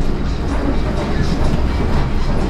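Cabin noise inside a YuMZ-T1 articulated trolleybus under way: a steady low rumble of the moving vehicle.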